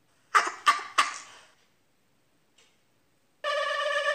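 Three short, harsh noise bursts about a third of a second apart, then a pause; near the end a steady electronic tone with sliding pitches starts up.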